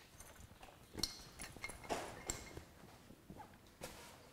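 Faint rustling of clothes and duffel bags being handled during packing, with a few light knocks and taps.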